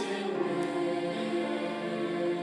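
High school ensemble choir singing held, sustained chords, moving to a new chord just after the start.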